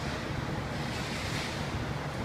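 Steady room noise: an even hiss over a low rumble, with no distinct events.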